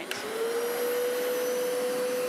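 Hoover Power Scrub Elite carpet cleaner switching on with a click, its motor spinning up over the first half second to a steady whine over a hiss of suction as it runs on the carpet.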